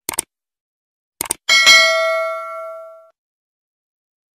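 Subscribe-button animation sound effect: a quick double mouse click, another double click about a second in, then a notification-bell ding that rings out and fades over about a second and a half.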